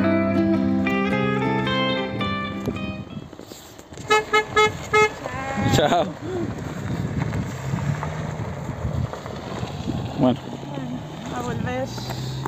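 Guitar music fades out over the first few seconds; then a vehicle horn toots four short times in quick succession, followed by steady outdoor noise.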